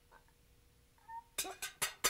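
A person laughing in quick, sharp bursts, about four or five a second, starting a little past halfway.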